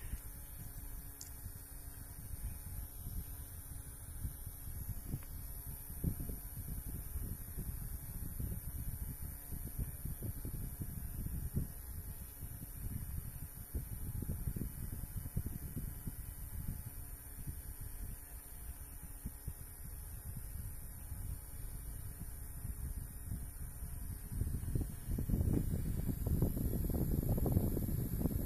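Small battery-powered handheld misting fan running, its airflow buffeting the microphone as a steady low rumble. The rumble grows louder about three seconds before the end, as the fan comes closer to the microphone.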